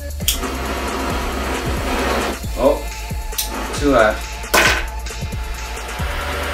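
Butane torch hissing as it heats the nail of a glass dab rig, with a sharp click near the start and another about halfway through. Hip-hop music with a deep bass runs underneath, and a short "uh" is voiced in the middle.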